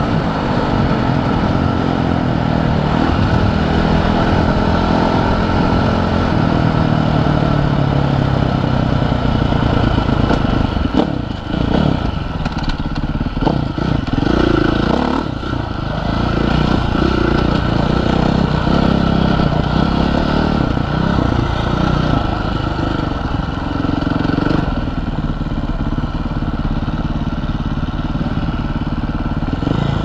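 Husqvarna FC450 dirt bike's single-cylinder four-stroke engine running under the rider, its revs rising and falling with the throttle. There are a few sharp knocks about a third of the way in.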